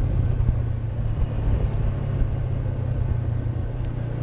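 2013 Honda CB500X's parallel-twin engine with a Staintune exhaust running at a steady cruise on a dirt road, a low even engine hum under a constant hiss of wind and road noise.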